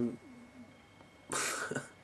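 A man's single short cough, just over a second in.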